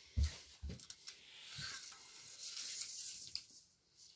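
Quiet handling sounds: two soft thumps, then a steady rustling hiss for a couple of seconds as a tape measure is drawn out along a crocheted shawl on a bedspread.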